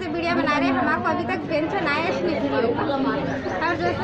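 A woman speaking, with other voices chattering around her.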